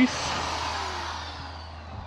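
A steady rushing noise with a low hum underneath, fading gradually over a couple of seconds.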